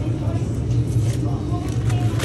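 Steady low hum of sandwich-shop kitchen equipment, with background voices.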